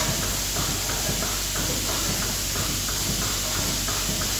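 Goat milking machine running in the parlour: a steady vacuum hiss and low hum, with a stream of irregular clicks several times a second.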